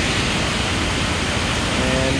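Steady rush of water pouring through the partially opened gates of a flood-control dam and churning into the tailwater below.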